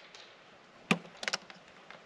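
A few sharp knocks and clicks of hard objects being handled: one about a second in, then two quick clicks just after.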